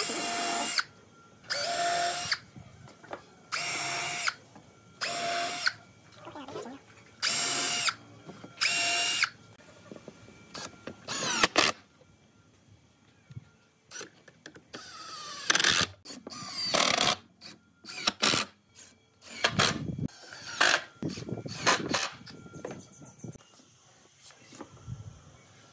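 Cordless drill-driver driving screws into a wooden table frame: six short runs of about a second each, spaced about a second and a half apart, then a few more bursts later on.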